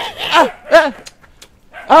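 A man imitating a dog, giving two short barks about half a second apart, each rising and then falling in pitch.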